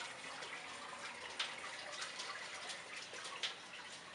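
Faint, steady rushing noise with a few soft clicks and taps: handling noise from a camera being carried while walking, with footsteps.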